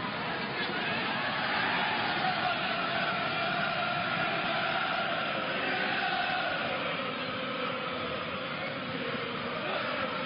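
Football stadium crowd of supporters, a steady mass of crowd noise with a drawn-out chant sung over it.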